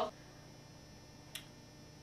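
Quiet room tone with one short, sharp click a little past halfway.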